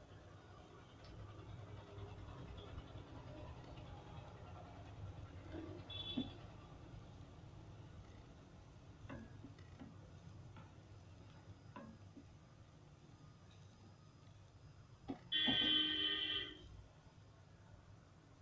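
Soya chunks simmering faintly in water in a non-stick kadhai, with a few light taps of a spatula against the pan in the middle as they are stirred. Near the end, a loud beeping tone sounds for about a second.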